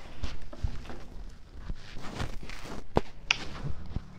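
Scattered light knocks and clicks over a faint hiss, the sharpest about three seconds in: small handling noises.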